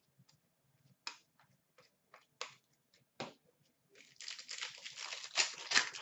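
Trading cards handled by hand, with a few separate sharp flicks, then a card pack's wrapper torn open and crinkled in a dense rustle over the last two seconds.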